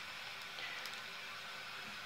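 Steady low hiss with a few faint light ticks: a bagged comic book being handled and set onto a small wooden easel.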